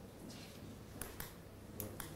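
A few faint, sharp clicks at irregular intervals from a laptop being operated, over quiet room tone.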